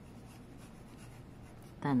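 Graphite pencil shading on drawing paper: a faint, steady scratching of the lead rubbing over the paper.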